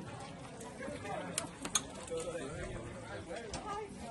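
Indistinct voices of people talking in the background, with a few sharp clicks or knocks in the middle.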